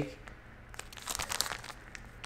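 A plastic soft-bait bag crinkling as it is handled and turned over in the hands, with a scatter of light crackles about a second in.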